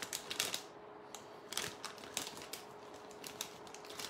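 Scattered light clicks and faint rustling from jewelry in plastic packets being handled, over a faint steady hum.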